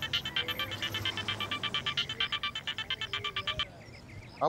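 A mobile phone's electronic ringtone, a fast, even run of high beeps, cuts off suddenly near the end as the call is answered.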